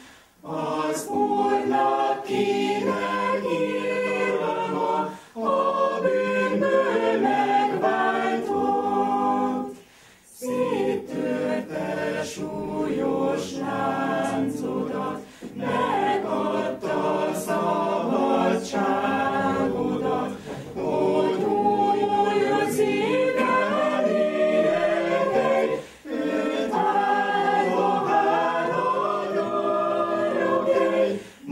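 A choir singing in several voices, in phrases separated by short breaks roughly every five seconds.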